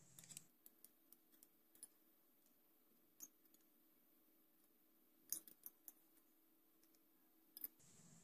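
Near silence with a few faint, scattered clicks and light taps, a small cluster of them about five seconds in: a plastic spoon scraping thick cream from a small stainless steel pot into a small glass jar.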